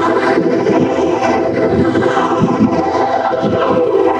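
A logo jingle run through heavy electronic audio effects, turned into a loud, dense, grainy wash of sound with faint steady tones beneath it, unbroken throughout.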